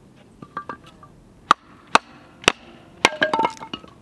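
Pieces of dry split firewood knocking together as they are handled and set down: three sharp clacks about half a second apart, then a quick clatter of several more with a short ringing note.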